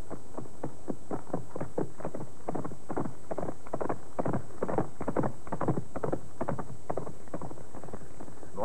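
Hoofbeats of a horse ridden at speed, a quick uneven run of knocks that is loudest around the middle and thins out toward the end.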